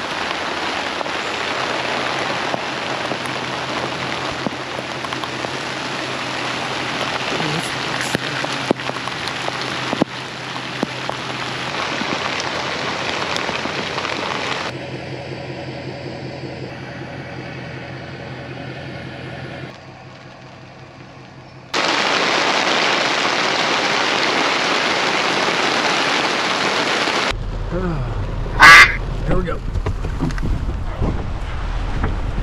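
Heavy rain pattering on a plastic tarp stretched over a car, with a quieter stretch about halfway through. Near the end there is one short, very loud sound with a bending pitch.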